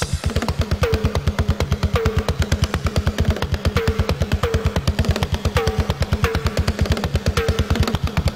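Drum kit solo: a fast, even run of bass drum strokes, about eight a second, under tom and cymbal hits that fall roughly every half second to a second.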